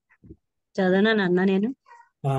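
A voice holding one long chanted vowel for about a second, its pitch wavering slightly, in a scripture recitation.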